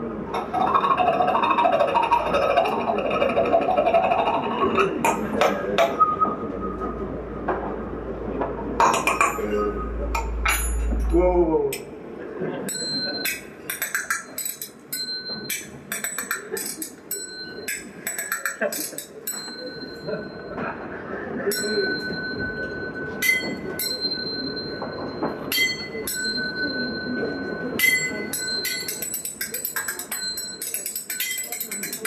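Small hand-held cymbals struck and clinked together in a slow, free improvisation, each hit leaving a high ringing tone that hangs for a second or more. The first dozen seconds are denser and louder, with a voice-like sound and a deep rumble; after that the strikes come one by one with space between them.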